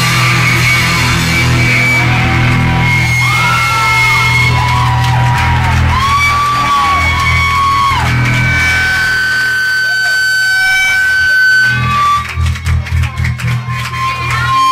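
Live rock band playing loud, with electric guitar holding long, bending notes over bass and drums. The band breaks into short stop-start hits near the end.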